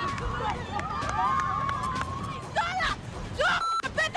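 Women's high-pitched voices shouting excitedly, rising and falling in pitch, over background chatter.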